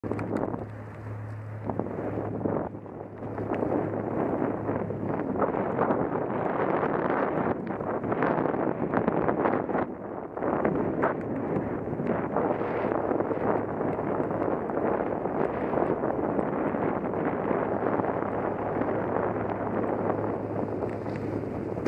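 Wind rushing over the microphone of a camera on a moving gravel bike, with the tyres rolling over a dirt path and frequent small rattles and knocks as the bike goes over bumps. A steady low hum runs underneath.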